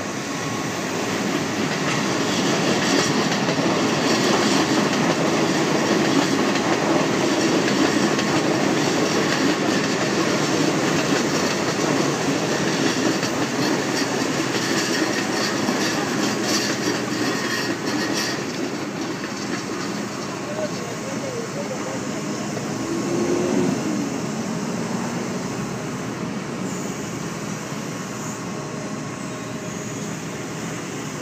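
A loud, heavy rumble with a rattling clatter that swells over the first couple of seconds, holds for a long stretch and dies away slowly through the second half, like a heavy vehicle passing close by, over the steady running of a dredging excavator's engine.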